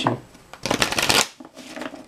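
Tarot cards being shuffled by hand: a dense run of rapid card flicks lasting under a second, then softer handling of the deck.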